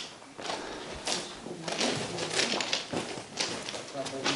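Footsteps crunching on loose gravel ballast along an old railway track bed, several steps in a row inside a stone tunnel.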